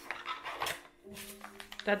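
Crinkling and rustling of a small advent-calendar packet being opened and handled by hand, a quick cluster of crackles in the first second, then quiet handling.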